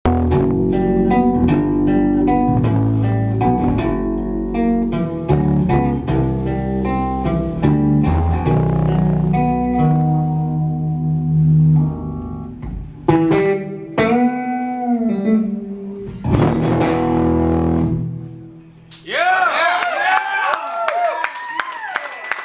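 Solo electric bass guitar played live: a dense run of overlapping notes over held low notes, thinning out about halfway through into single notes with pitch bends, then high, wavering, bent notes near the end.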